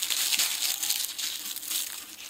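Dry, heat-crisped garden plant leaves and seed heads crackling and crunching as a hand crushes them: the plant has dried out in the summer heat. A dense, crisp crackle that tails off near the end.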